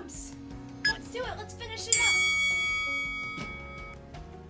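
Background music with a singing voice. About halfway through, a bright bell-like chime strikes once and rings on, fading.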